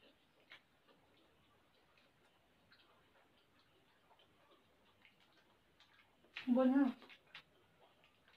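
Quiet eating with spoons and forks from plates: a few faint, sparse clicks, then a short burst of a person's voice about six and a half seconds in.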